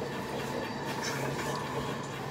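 Fabric rustling and a backpack being handled as folded clothes are pushed down into it, an even, steady shuffle with no sharp knocks.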